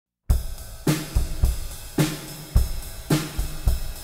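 Drum-kit intro to a music track: a steady beat of sharp drum and cymbal hits, about two a second, starting suddenly just after the start.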